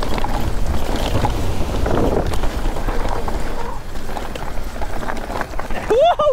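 Wind rushing over the camera's microphone as a mountain bike descends fast, with the tyres rolling over gravel and dirt and short rattles and clicks from the bike over the rough ground.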